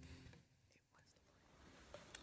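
Near silence, with the faint last moment of a fading guitar chord at the very start.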